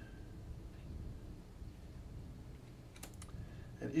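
Magic: The Gathering cards handled in the hands: faint rubbing and a couple of light clicks about three seconds in as one card is slid off the front of the stack to reveal the next, over a low steady hum.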